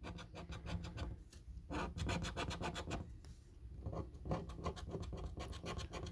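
Coin scratching the latex coating off a Cash Bolt scratch card, in runs of quick rasping strokes with a short pause about three seconds in.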